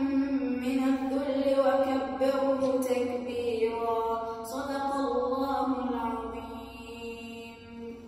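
A boy's voice chanting Quran recitation in the melodic tajweed style, holding long notes that glide up and down in pitch. The chant softens over the last couple of seconds.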